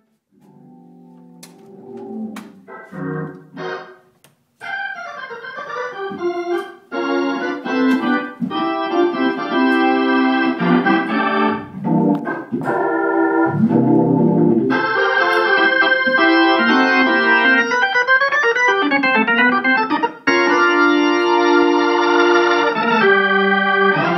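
Console organ playing sustained chords. It starts soft and broken, then swells into full, held chords about halfway through, with a brief break near the end.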